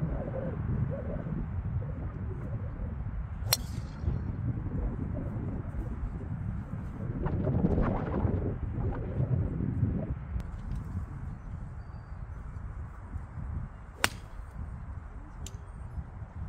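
A TaylorMade SIM driver strikes a golf ball with one sharp crack about three and a half seconds in. Near the end comes a second sharp club strike, an 8-iron shot. Steady wind rumbles on the microphone throughout, swelling in the middle.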